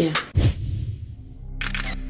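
A deep boom about half a second in, then a steady low music drone, with a quick run of camera-shutter clicks near the end as a documentary sound effect.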